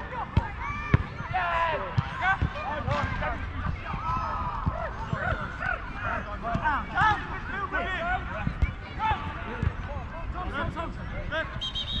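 Distant shouts and calls from footballers across an outdoor pitch. Scattered low thuds sound under them.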